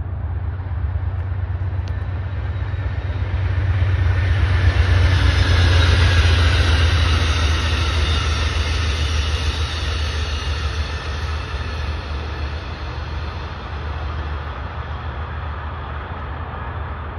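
Amtrak passenger train passing at speed. Its steady rumble and rail noise build to a peak about five seconds in, then fade as the cars go by and the train draws away.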